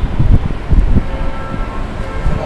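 Low rumbling noise in uneven bursts, loudest about a quarter and three quarters of a second in, with faint steady tones above it.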